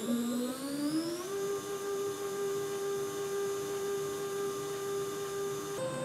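Stepper motor of a home-made honey extractor, run by a microstepping driver, whining as it ramps up to speed. The pitch rises over about the first second and then holds steady, with a small step up near the end. It is running nice and smooth.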